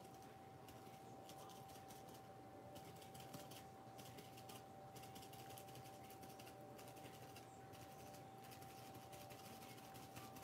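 Faint, irregular crackling of plastic wrap as it is rubbed and pressed down over a glued napkin to push out air bubbles, over a faint steady hum.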